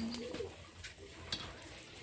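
A dove cooing softly, with two light metal clinks of a ladle against the pot about a second and a second and a half in.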